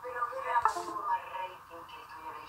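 Distorted, tinny voice audio from the TV footage, with a sing-song, almost synthetic quality and a short hiss partway through.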